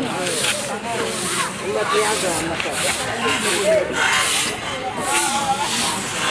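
Rusty metal drain grate scraping against the concrete edges of a gutter as it is manhandled into place, with a few sharper scrapes among the rasping, over background voices.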